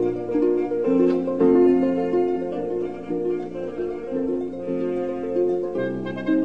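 Concert harp playing a classical concerto passage, a flowing stream of plucked notes and chords that ring over one another.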